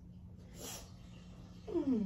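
A woman crying: a sharp sniff about half a second in, then a short, loud whimper that falls in pitch near the end, over a steady low hum.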